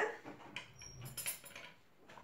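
Faint clicks and light scraping of kitchen utensils against ceramic bowls, with one brief high metallic ping about a second in.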